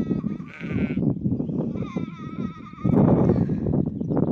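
Sheep bleating: two long, wavering bleats, one in the first half-second and another about two seconds in, over a loud, low rumbling noise.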